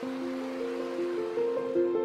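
Calm background music of slow, held notes changing every half second or so, with the rush of the river underneath that fades away near the end.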